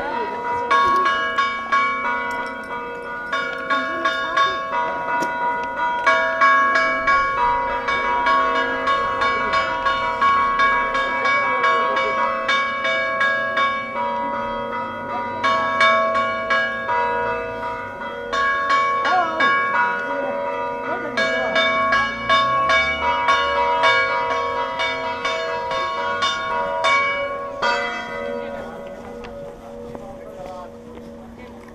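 A peal of several church bells, struck again and again in quick succession, each strike ringing on under the next. The ringing fades out near the end.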